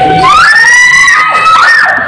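Excited high-pitched shouting, screaming voices: one shrill cry rises and is held for about a second, and a second rising cry comes near the end.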